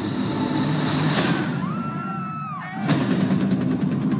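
Film trailer soundtrack. A steady low drone carries a rising whoosh and a tone that glides up and back down, and a sudden loud hit lands about three seconds in.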